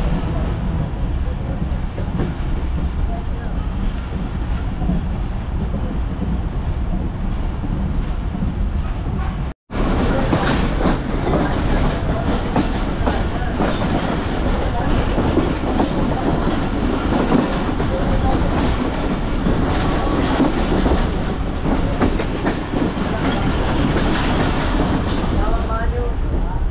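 Pakistan Railways passenger train running along the track, heard from inside the coach: a steady rumble of wheels on rails with repeated short knocks. The sound drops out briefly about ten seconds in.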